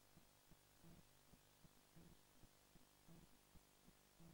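Near silence: a faint steady hum with a soft low pulse about once a second.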